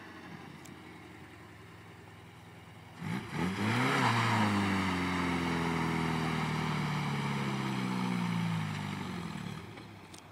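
Mitsubishi Sigma GH wagon's 2.6-litre Astron four-cylinder idles, then is revved hard about three seconds in for a burnout. The revs peak and then sag slowly under load for about five seconds, with a rushing noise of spinning tyres, before it backs off near the end. The revs falling away show the old 2.6 lacks the power to hold a burnout.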